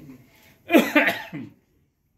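A person coughing, two or three harsh coughs in quick succession about a second in, which then cut off abruptly.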